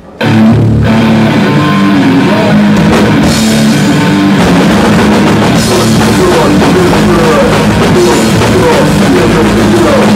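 A hardcore band playing live, loud guitar and drums, kicking into a song suddenly just after the start and running at full volume.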